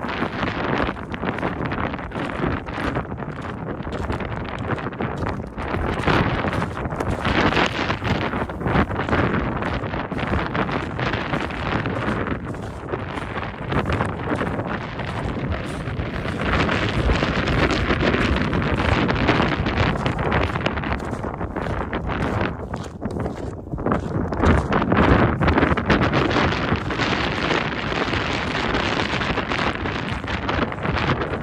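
Strong wind buffeting the microphone in gusts, swelling and easing every few seconds.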